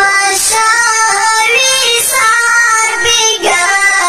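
A Pashto tarana: a solo voice singing an unaccompanied chant, with long held notes that bend and waver in pitch.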